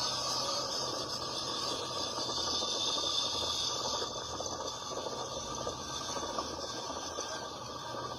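Steady rushing street noise from a roadside video of a bus, played back through a phone's small speaker.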